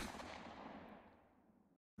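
A single sharp hit with a long echoing tail that fades out over about a second and a half, the high end dying away first: a cinematic impact transition effect on a cut.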